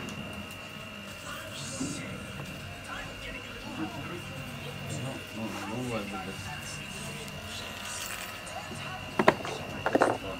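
Indistinct background voices with faint music and a steady high-pitched whine underneath; near the end, two sharp knocks.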